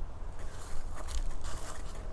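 Faint crackling and scraping rustles from movement, over a steady low rumble on the microphone.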